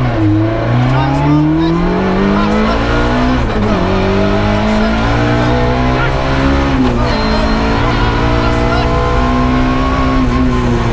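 Ford Puma 1.6 rally car's engine heard from inside the cabin under hard acceleration, its pitch climbing and dropping back twice, about three and a half and seven seconds in, before climbing again.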